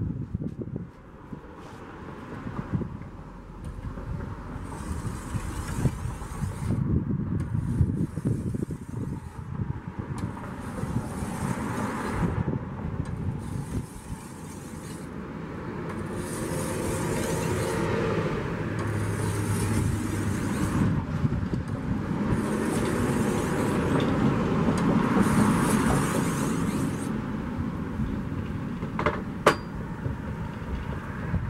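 Oiled whetstone, a 3,000/8,000-grit combination stone held in the hand, stroked repeatedly along the edge of a curved shashka saber blade, a rasping stroke about once a second, under a low rumble. Just before the end comes one sharp knock as the stone is set down on the bench.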